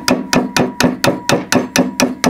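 A soft-faced mallet tapping rapidly and evenly, about six blows a second, on a peg spanner set on the tab screw of a bronze Autoprop feathering propeller hub, with a faint steady ringing behind the blows. The tapping is meant to shock loose the left-hand-threaded, Loctite-secured tab screw.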